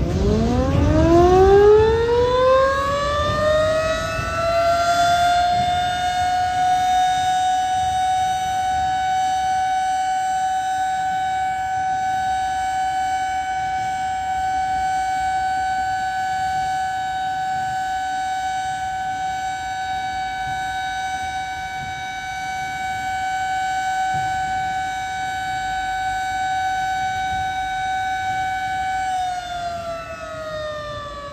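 Sterling Model M electromechanical siren winding up from a low pitch to a steady high wail over about six seconds. It holds that one pitch, then begins to wind down near the end. A freight train's cars rumble past underneath.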